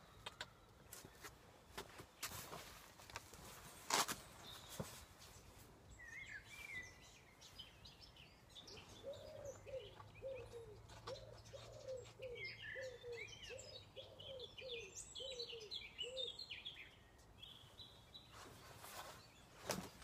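Faint outdoor birdsong: scattered high chirps, and through the middle a run of about a dozen short, lower calls repeated evenly, roughly two a second. A couple of soft knocks come about two and four seconds in.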